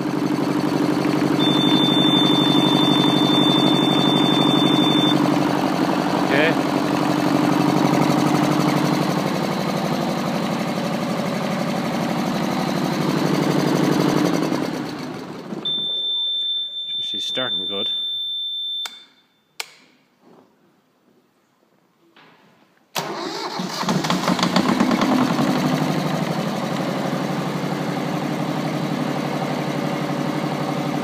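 Volvo Penta MD2010 two-cylinder marine diesel running steadily, with the instrument panel's high-pitched alarm ringing for about three seconds near the start as the water-temperature switch is shorted to ground to test it. About halfway through the engine stops. The alarm rings again for a few seconds, there are a few seconds of near silence, and then the engine is running again near the end.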